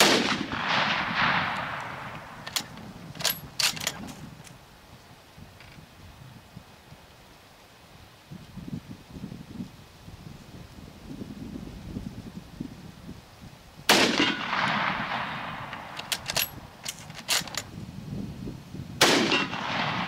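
Three shots from a Gewehr 98 bolt-action rifle in 8x57mm Mauser: one right at the start, one about 14 s in and one about 19 s in, each followed by a long echoing decay. A few seconds after the first two shots come short metallic clicks as the bolt is worked.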